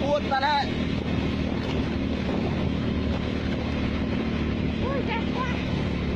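Motorbike engine running at a steady speed while riding, with wind rushing over the microphone. Short bits of voice come near the start and again about five seconds in.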